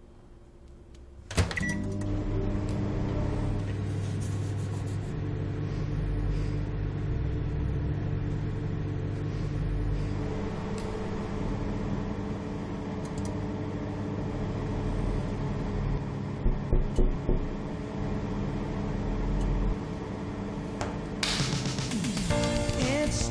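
Microwave oven switching on with a click about a second in, then running with a steady hum. A quick run of four or five short knocks comes about three-quarters of the way through, and a louder rush of noise near the end.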